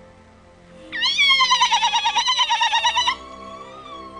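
A woman ululating: one high, rapidly trilled cry of about two seconds, starting about a second in, in celebration.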